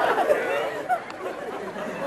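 Indistinct overlapping voices that fade down over the first second and then carry on low and murmuring.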